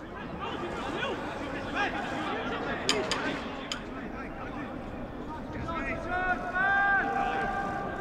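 Football players and coaches shouting across an empty stadium pitch, their calls carrying with no crowd noise. About three seconds in there are three sharp knocks, and near the end one long held call.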